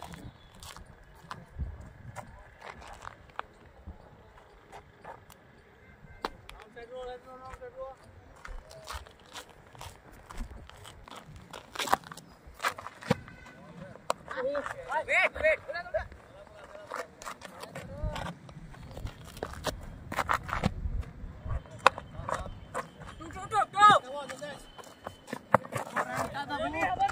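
Players' raised voices calling out across an open cricket ground, with scattered sharp knocks; the loudest crack comes about halfway through, as a delivery is played off the bat.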